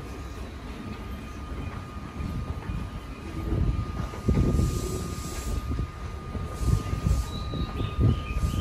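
A JR East 209-series electric train standing at the platform, giving off a steady high-pitched electrical hum. A low rumble swells about halfway through and again near the end, with short hisses of air at the same times.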